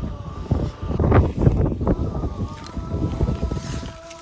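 Wind buffeting the microphone: a gusty low rumble that eases off toward the end.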